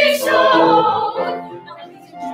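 Several voices singing a musical-theatre song together; the singing dies away about a second and a half in.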